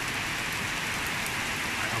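Steady, even hiss with no distinct events.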